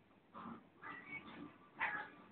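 A weightlifter's short, sharp breaths, a few half a second apart, then a louder forceful exhale near the end as the barbell is pulled overhead in a power snatch.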